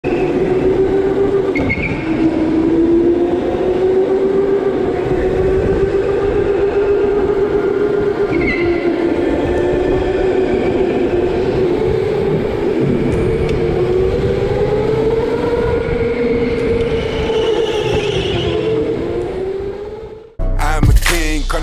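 Electric go-kart's motor whining while driven, its pitch rising and falling with speed, over rumbling tyre and chassis noise.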